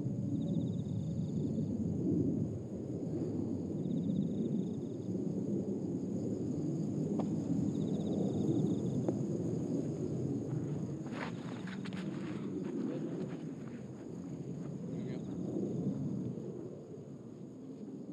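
Outdoor golf-course ambience: a steady low murmur of open-air noise, with a short high-pitched buzzing call recurring every few seconds and a few sharp clicks about two-thirds of the way through.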